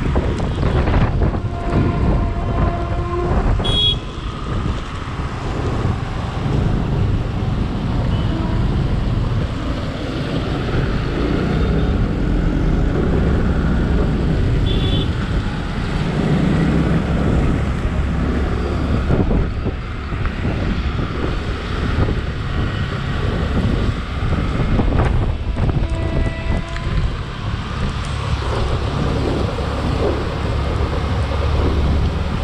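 Wind buffeting the microphone of a GoPro on a motorcycle riding through city traffic, over a steady low rumble of engines and tyres.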